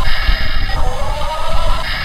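Simulated diesel engine sound from the built-in speaker of a Yigong YG258C remote-control excavator, heard close up: a synthetic engine drone whose pitch rises and restarts about once a second, like a short looped sample.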